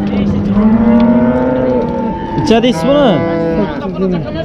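A cow mooing: one long, steady moo of about two seconds, then a second, shorter moo.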